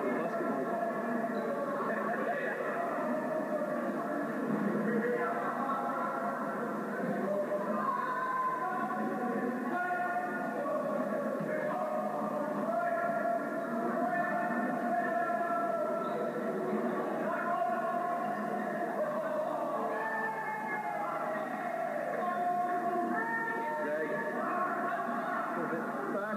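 Indistinct voices mixed with music, thin and muffled as heard through a television's speaker, going on steadily without a break.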